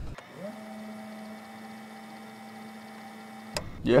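A steady pitched hum that glides up at its start, holds one pitch for about three seconds, then cuts off suddenly.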